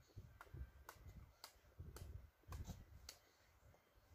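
Near silence: room tone with faint, evenly spaced clicks, about two a second.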